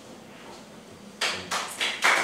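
Quiet room tone, then a little past halfway a run of sharp knocks, about three a second.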